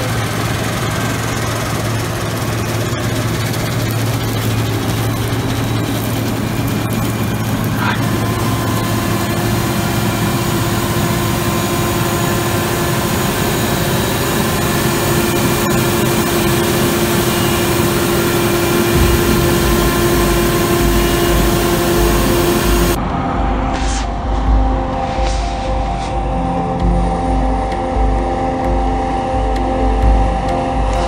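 Steady running of a tractor engine and a Claas combine harvester working alongside, heard from inside the tractor cab while the combine unloads grain into the trailer. About three-quarters of the way through, the sound cuts abruptly to a different recording.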